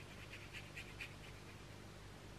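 A round watercolour brush stroking and dabbing wet paint onto textured watercolour paper: a quick run of about six faint scratchy strokes in the first second or so, then only room hum.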